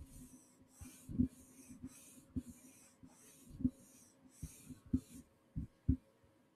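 A cotton swab rubbed against a microphone grille close up: short scratchy strokes, about two a second, that stop near the end, with dull low thumps of the mic being bumped in between.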